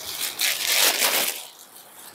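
Rustling of a sequinned georgette saree as it is unfolded and spread out by hand: a crisp rustle that builds, is loudest about a second in, and dies away.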